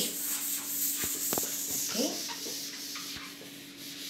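Rubbing against a whiteboard's surface, with two light taps just after a second in, over a steady low hum.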